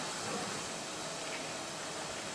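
Steady low hiss of background noise, with no distinct sound event.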